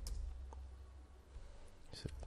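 A few isolated clicks of computer keys being pressed while code is typed, over a faint, steady low hum.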